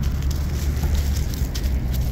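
A hand digger scraping and crumbling soil and dry leaves in a dug hole, with soft crackling, over a steady low rumble.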